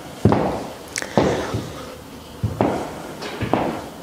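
Stiletto-heeled boots clicking on a hard studio floor as the wearer walks and turns, about eight separate heel strikes at an uneven, unhurried pace.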